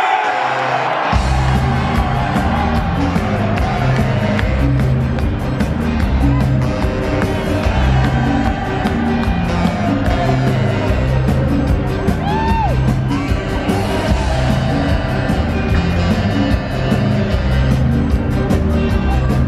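Live ska band with saxophones, bass guitar and drums kicking into a fast, bass-heavy instrumental about a second in, heard from among an arena crowd with crowd noise mixed in.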